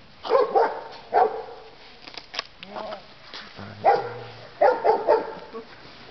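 A dog barking repeatedly in short, sharp barks: about three barks, a pause of about two seconds, then four more in quick succession.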